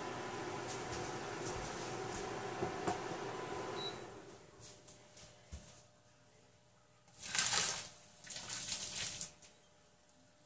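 A steady background hum for about four seconds, then quiet, then two short bursts of splashing and sizzling as hot tomato sauce is poured into a heated frying pan.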